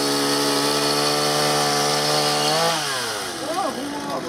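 Two-stroke petrol chainsaw held at full throttle, cutting through a wooden plank with a steady high engine note; about two and a half seconds in, the cut is through and the engine falls away to idle.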